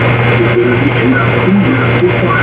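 Loud, steady hiss with a low hum underneath. Faint, short, indistinct voice-like fragments come and go within it, with no clear words.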